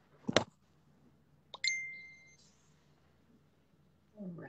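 A brief knock of handling noise near the start. About a second and a half in comes a click and then a phone notification chime: a short electronic ding, a steady high tone that fades in under a second.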